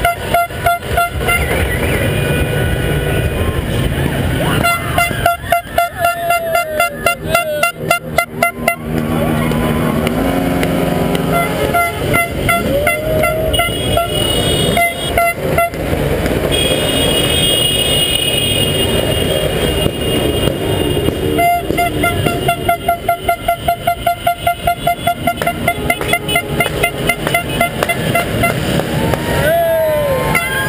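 Several vehicle horns honking over traffic noise: held horn blasts at different pitches, and long runs of rapid rhythmic beeping at about three to four beeps a second.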